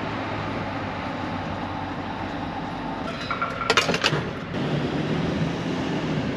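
Gas pump nozzle running steadily while fuel flows into the van's tank, with a short cluster of sharp clicks and brief tones about three and a half seconds in.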